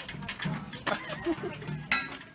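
Llama sneezing: a sharp, noisy burst near the end, with a smaller one about a second in.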